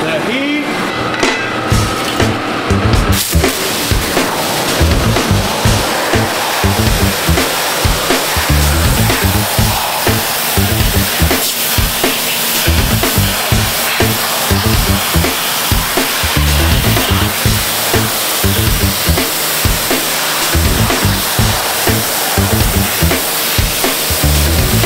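Background music with a steady beat over the hiss of a heated pressure washer's spray wand blasting water across steel bars.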